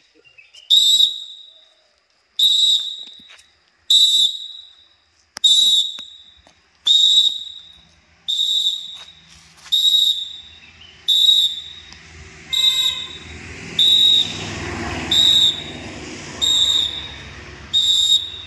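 A training whistle blown in short, sharp blasts at a steady cadence, about one every one and a half seconds and gradually a little faster, pacing a group through the repetitions of a drill. From about halfway through, a background noise builds up under the blasts.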